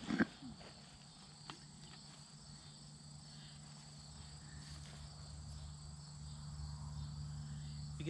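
Crickets or similar insects chirping in a steady high-pitched trill, over a low steady hum, with a short knock just after the start.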